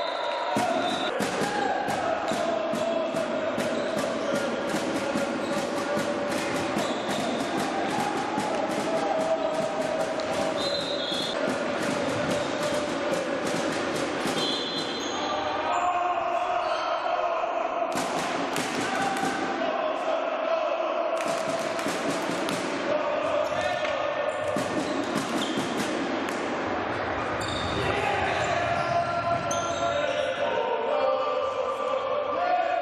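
Indoor field hockey play in a sports hall: rapid sharp clicks and knocks of sticks striking the ball and the ball hitting the floor and boards, with players' voices calling over it and a hall echo.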